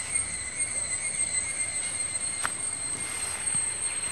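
Insects drone steadily at a high pitch, with a faint click about two and a half seconds in.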